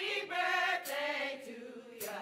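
Church choir and congregation singing a birthday song together, with several voices holding sung notes in short phrases.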